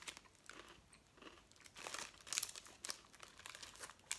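Faint, irregular crunching of a crisp chocolate-coated Mikado biscuit stick being chewed.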